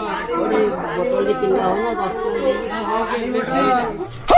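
Several voices talking over one another: indistinct chatter.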